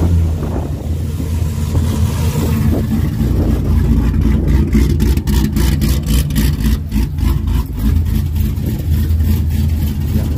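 Cadillac CTS-V's V8 running at low revs with a deep, steady rumble; from about three seconds in the sound turns choppy and uneven.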